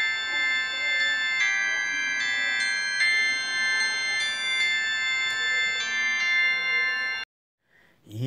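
Instrumental introduction: a keyboard-like melody instrument plays a simple line of held notes, the tune of the psalm refrain. It stops abruptly about seven seconds in, leaving a brief silence.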